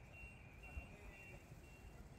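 Faint forklift reversing alarm, a short high beep repeating about twice a second over a low rumble.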